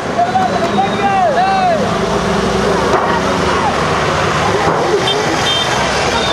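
Truck engines running in slow traffic under a steady din, with people shouting: several rising-and-falling calls in the first two seconds, then scattered shorter ones.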